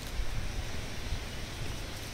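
Wind blowing through the leaves of a yellow trumpet tree, a steady rustle with an uneven low rumble of wind buffeting the microphone.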